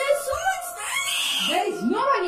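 A child screaming and crying in terror, the voice rising to a high shriek about a second in, over faint steady background tones.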